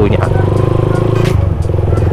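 Motorcycle engine running at low speed as the bike rolls slowly along, heard from the rider's position; its note drops a little past halfway.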